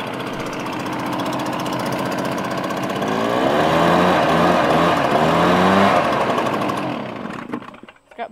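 Stihl BR 350 backpack leaf blower's two-stroke engine running, revved up on the throttle in three surges from about three seconds in, then dying away near the end.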